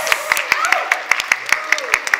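Scattered hand clapping from a few people, separate sharp claps rather than a dense crowd applause.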